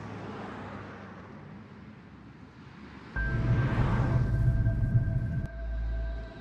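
A faint steady hum, then about three seconds in a sudden jump to the loud low rumble of a car driving, heard from inside the cabin. Sustained music-like tones are held over the rumble.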